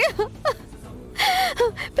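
A woman crying: a loud, breathy sobbing gasp with a brief wavering cry about a second in.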